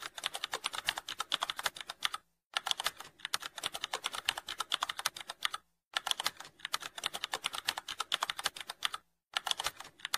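Computer keyboard typing sound effect: rapid, even keystroke clicks in runs of about three seconds, broken by three short pauses. It accompanies text being typed out on screen.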